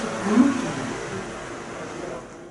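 Indistinct voices and room noise from a seated audience, with a short voiced sound rising in pitch about half a second in.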